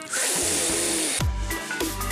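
Segment intro jingle: a loud rushing noise sweep for about a second, then electronic music with deep bass hits that drop in pitch and short high synth notes.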